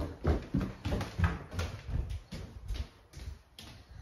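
Footsteps, a steady run of short, low thumps about three or four a second.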